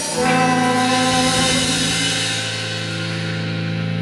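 Live rock band holding one sustained chord on electric guitars and bass, launched by a drum hit at the start and ringing steadily as it slowly fades.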